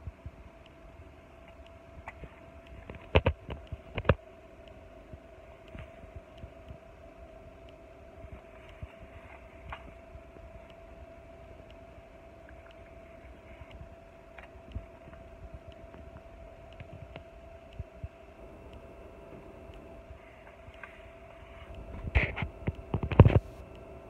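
A wooden toy fire engine being handled: sharp clicks about three and four seconds in, scattered faint taps, and a cluster of louder knocks near the end, over a steady background hum.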